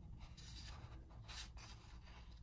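Faint paper rustling as a picture book's endpaper is turned over and laid flat by hand, with two soft swishes, about half a second in and again near the middle, over a steady low hum.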